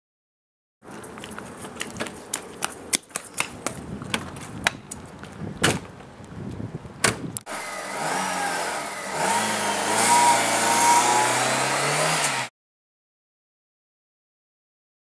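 A run of sharp clicks and knocks, then from about seven and a half seconds in a car engine runs and revs, its pitch rising. It cuts off sharply a second or so before the end.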